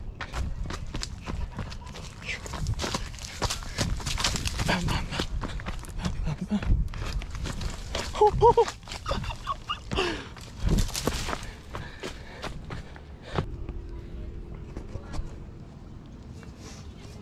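Quick, irregular footfalls of someone running down a dirt trail, with handling thumps on the handheld camera. There are brief voice sounds about eight and ten seconds in, and the footfalls thin out and stop in the last few seconds.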